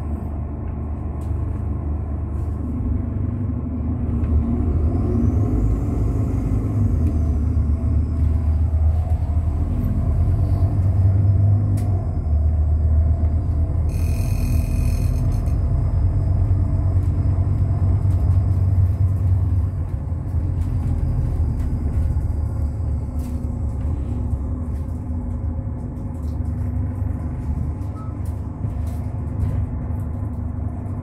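Bus engine and running gear heard from inside the passenger cabin: a steady low rumble that grows louder about four seconds in and eases off about twenty seconds in. A brief high-pitched tone sounds about fourteen seconds in.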